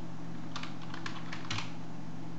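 Computer keyboard typing: a quick run of keystrokes lasting about a second, the last one the loudest. A steady low hum runs underneath.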